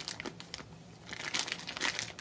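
Clear plastic bag full of silver coins crinkling as it is squeezed and turned in the hand, a few faint crackles at first, then busier crinkling in the second half.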